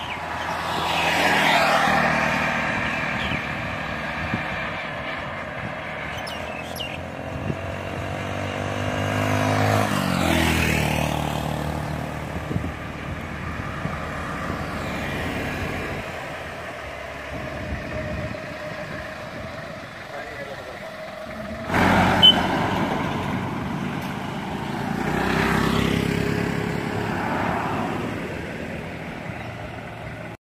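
Motor vehicles passing on a road, their engine pitch sliding up and then down as each one goes by. The loudest passes come about two seconds in, around the middle, and near the end, with a sudden louder one shortly after two-thirds of the way through.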